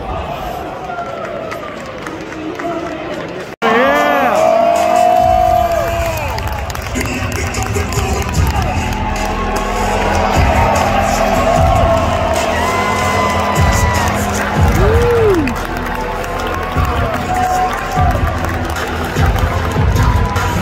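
Arena crowd cheering and shouting, then, after a sudden break about three and a half seconds in, wrestlers' entrance music with a steady beat over the arena PA. The crowd keeps cheering under the music.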